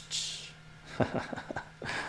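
A man's breathy exhale, then a few short, soft chuckles about a second in, building toward a laugh.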